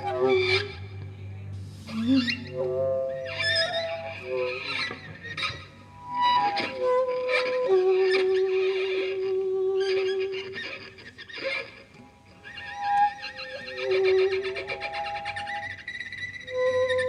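A saxophone and a violin improvising together: short, broken phrases mixed with long held notes, one of them a long steady low note about eight seconds in.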